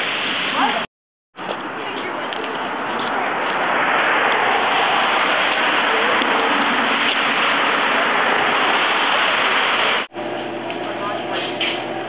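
A laugh, then after a brief cut a steady, loud rushing noise that grows a little a few seconds in and stops abruptly near the end.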